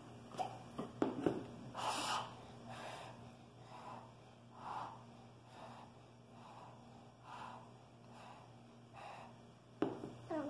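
A child blowing on hot lemonade in a glass to cool it: about nine short breathy puffs, roughly one a second. A few light knocks come in the first second and a half.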